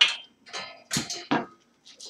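A few sharp knocks and clatters of hard parts being handled, the loudest right at the start and three more over the next second and a half.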